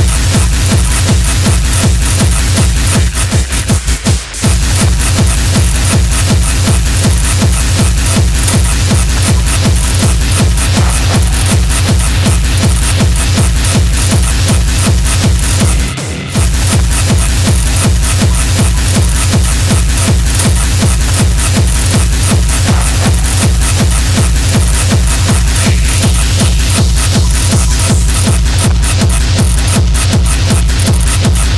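Hard techno playing loud: a steady, driving kick drum under dense high percussion. The beat stutters and drops out briefly about three to four seconds in, and again for a moment around sixteen seconds in.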